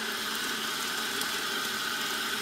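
Bathtub faucet running steadily, its stream pouring into a tub of foamy bathwater.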